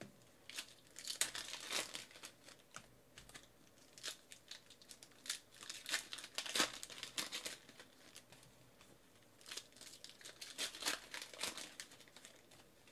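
Foil trading-card pack wrappers crinkling and tearing as they are ripped open by hand, in irregular bursts with short pauses between.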